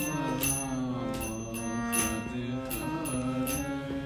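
Harmonium, its bellows pumped by hand, playing sustained chords under a devotional chant that is sung. Small hand cymbals strike about twice a second.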